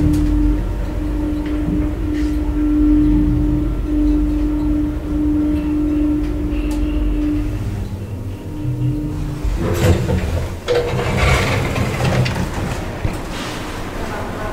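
KONE elevator car travelling downward: a steady motor hum over a low rumble, which dies away a little past halfway. About ten seconds in comes a sharp knock, followed by a few seconds of rustling, clattering noise as the car arrives.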